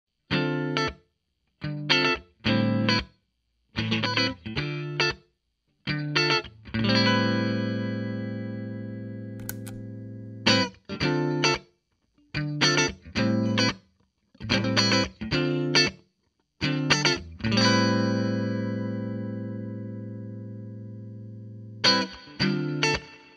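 Distorted electric guitar, a Jay Turser through a Bulldog Badbull 60 amplifier, playing short chord stabs that stop dead with silence between them. Twice a chord is left to ring for several seconds and slowly die away.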